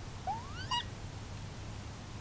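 Gray fox giving a squeaky call: a quick rising squeal about a quarter second in, then a brief second squeak right after it. A steady hiss and low hum run underneath.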